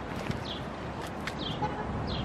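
A bird chirping, short high notes that slide downward, heard twice about a second apart over steady outdoor background noise, with a couple of faint knocks in between.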